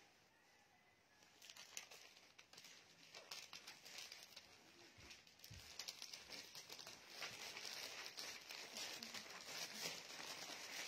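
Faint rustling and crinkling, as of plastic-bagged clothing being handled, with many small crackles. It grows busier and a little louder after the first couple of seconds.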